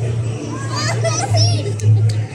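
Young children's high-pitched voices, a few short excited calls and squeals in the middle of the moment, over crowd chatter and a steady low musical hum.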